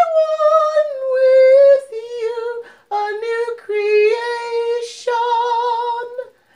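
A slow, wordless solo melody with vibrato, sung or played in phrases of a second or two. It starts on a higher note, steps down and hovers on lower notes, with a breath taken about five seconds in.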